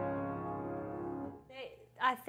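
Grand piano's closing chord ringing out and fading away. A voice starts speaking about one and a half seconds in.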